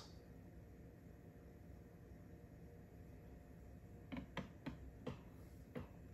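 Near silence at first. From about four seconds in come about six light clicks and taps of hard plastic PSA grading slabs being set down on a wooden table and handled.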